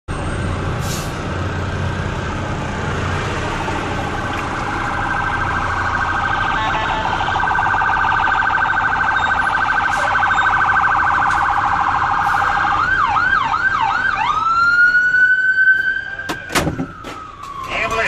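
Ambulance siren heard from inside the cab: a rapid pulsing warble that switches about 13 seconds in to four quick up-and-down sweeps and then a slow wail that rises and falls. Near the end come a couple of sharp knocks as the ambulance's side mirror is struck.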